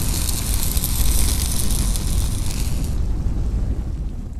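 Logo-reveal sound effect: a loud rumbling, sizzling burst like fire and sparks. The high hiss cuts off about three seconds in, leaving the low rumble to fade away.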